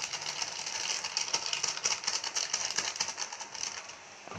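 A hand mixing spiced chicken pieces with spice powder in a steel bowl: a fast, dense run of small clicks and scrapes against the metal.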